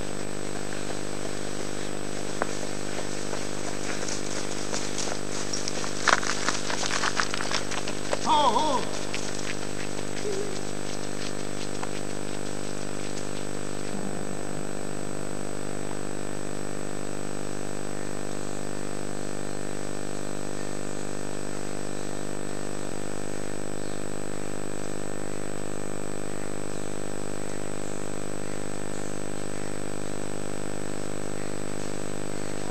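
A steady hum with many even overtones and a thin high whine throughout. Scattered clicks come between about four and nine seconds in, with a short falling cry near the end of them.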